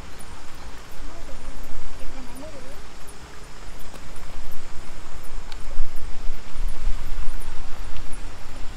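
Wind buffeting the microphone in uneven gusts, a heavy low rumble that grows stronger in the second half, with faint voices in the background early on.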